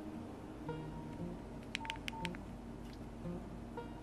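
Nokia X3-02 keypad tones as keys are pressed to type text: short beeps at several pitches, with a quick run of four sharp clicks about halfway through.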